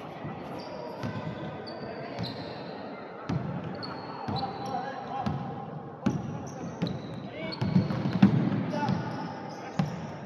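Basketball dribbled on a wooden gym court, sharp repeated bounces with short high sneaker squeaks, and players' and spectators' voices echoing in the hall.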